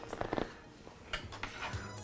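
Quiet room with a few faint clicks and rustles of handling as a power cable is picked up.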